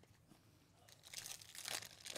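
Foil wrapper of a baseball card pack crinkling and tearing as it is opened by hand, faint, starting about a second in.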